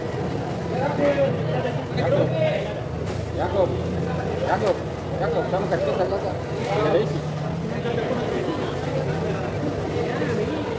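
People talking, untranscribed and partly in the background, over the hubbub of a busy market, with a steady low hum underneath.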